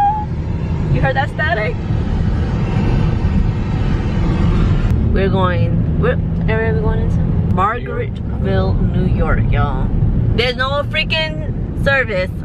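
Steady low road rumble inside a moving car's cabin, with a woman's voice talking on and off over it.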